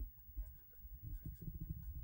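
Faint, short scratching strokes of a felt-tip marker pen writing on a white board.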